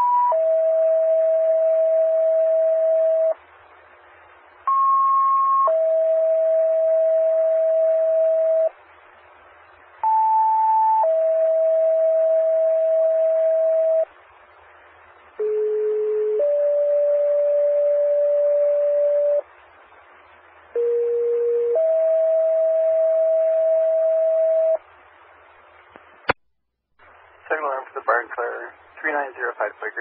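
Two-tone sequential fire paging tones over a scanner radio, with a steady hiss beneath. Five pairs sound in a row, each a short higher tone of about a second followed by a steady lower tone of about three seconds, toning out fire companies for a second alarm. A sharp click near the end, then the dispatcher's voice starts.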